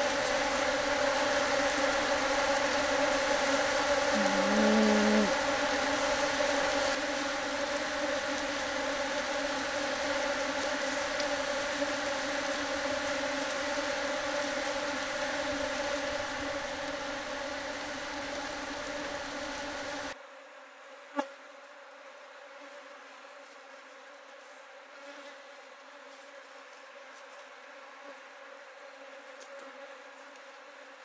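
Many Japanese honey bees buzzing loudly and steadily in flight around a bee ball that has engulfed a giant hornet queen, the excited wing hum of a colony in a defensive balling attack. A separate short buzz comes about four seconds in. About two-thirds through the hum drops suddenly to a much fainter buzz, followed shortly by a single click.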